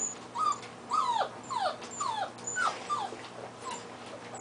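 Six-week-old puppy whimpers: a run of short whines, each falling in pitch, about two a second.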